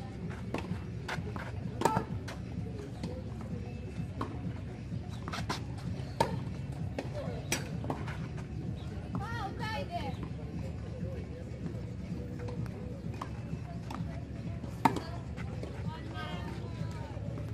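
Tennis balls struck by rackets and bouncing on a clay court during a rally, with sharp hits standing out at about two, six and fifteen seconds and quieter hits and bounces between them.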